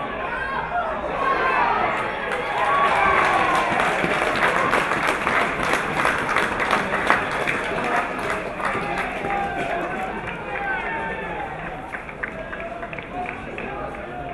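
Many voices of spectators and players at a rugby league ground, calling out and chatting over one another, louder for several seconds in the middle and then settling.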